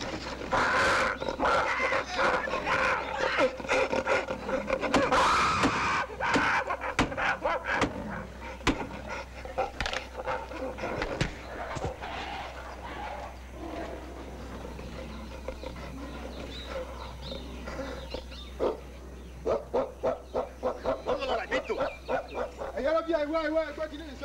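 Animals growling and snarling as they fight, mixed with men's shouts. It is loudest in the first several seconds, then dies down to scattered scuffling.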